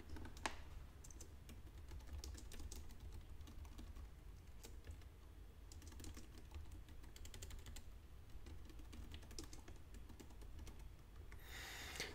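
Faint typing on a computer keyboard: a run of scattered key clicks, with one louder click about half a second in.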